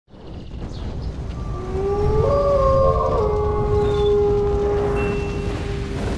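Several wolf howls layered on top of each other over a steady low rumble. Each howl rises at its start and then holds one long note. They come in about a second and a half in and fade near the end.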